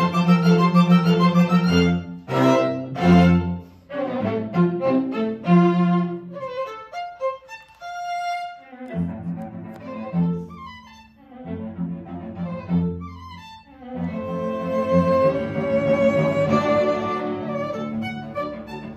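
String quartet of violins and cello playing a classical piece live with bowed notes. About seven seconds in, the low parts drop out for a couple of seconds, leaving the upper strings alone, and the playing grows fuller toward the end.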